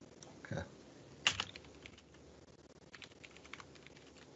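Computer keyboard typing, faint: a sharp keystroke about a second in with a few lighter ones after it, then a quick run of keystrokes near the end.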